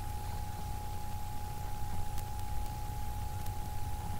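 Room background noise: a steady low hum with a thin constant tone above it and a few faint clicks.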